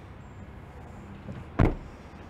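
The tailgate of a 2017 Suzuki Swift being shut: a faint knock, then one loud slam about one and a half seconds in.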